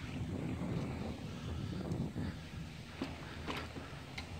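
Wind rumbling on the microphone and bicycle tyres rolling on pavement while riding a mountain bike, with a few faint clicks about three seconds in.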